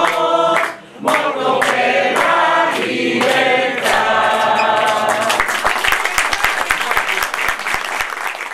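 A roomful of people singing together in chorus, then applause breaking out about five seconds in and taking over.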